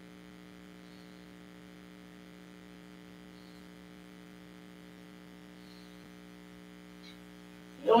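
A steady, faint electrical hum with no other clear sound, a mains-type buzz held at one low pitch.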